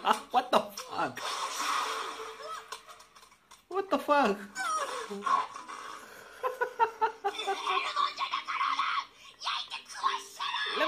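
A man laughing while the anime episode's audio plays, with characters' voices speaking.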